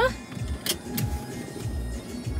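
Low rumble inside a car cabin under background music, with two short sharp clicks about two-thirds of a second and one second in.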